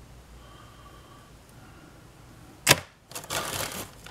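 A sharp click, then the crinkle of a clear plastic parts bag being lifted out of a cardboard kit box near the end.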